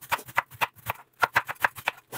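Chef's knife shredding a head of cabbage on a wooden cutting board: a quick run of crisp cuts, several a second, each blade stroke ending in a light knock on the board.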